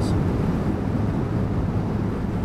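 Lexmoto Diablo 125 scooter's single-cylinder engine droning steadily at cruising speed, with wind rushing over the helmet-mounted camera's microphone.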